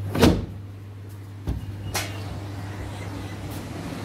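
Wooden balcony doors being unlatched and swung open: a loud clatter just after the start, then a thump and a sharp click about a second and a half and two seconds in, over a steady low hum.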